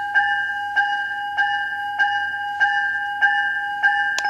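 Bell sound effect played through the onboard speaker of a Lionel LionChief O scale Metro-North M7 model train, triggered from its remote: a steady ringing bell tone, re-struck evenly about three times every two seconds.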